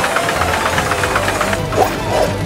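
Cartoon mine cart clattering down a rollercoaster track, a rapid even rattle of wheels on rails, over background music.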